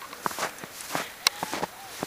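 Footsteps in fresh snow on a woodland path, an uneven run of soft steps, with one sharp click a little past the middle.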